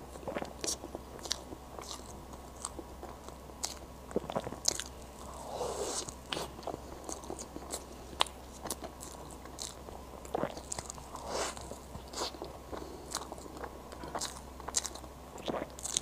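Close-miked eating of soft, cream-layered matcha crêpe cake: wet chewing, with many short sticky smacks and clicks of the lips and tongue as fingers are licked, and a fresh bite near the end.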